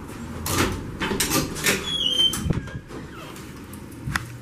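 Doors being pushed open and swinging shut, with several knocks and clunks and a brief high squeak about two seconds in.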